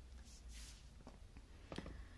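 Near silence: faint room tone, with a couple of soft clicks a little before the end.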